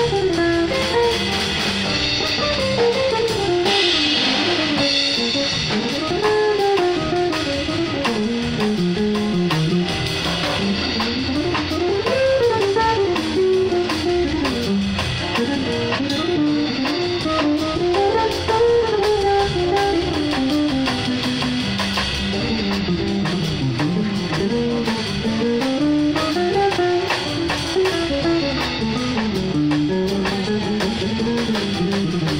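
A small live band playing: an archtop electric guitar plays a winding single-note melody line that rises and falls, over drum kit with cymbals keeping time.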